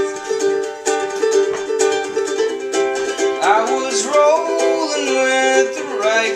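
Ukulele strummed in a steady rhythm of chords. About halfway through, a man's voice comes in singing over the strumming.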